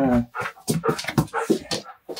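A dog whimpering: several short, pitched whines, the first falling in pitch right at the start.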